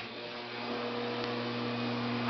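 A steady electrical hum switches on with a click: a low drone with a fainter higher tone above it, held level.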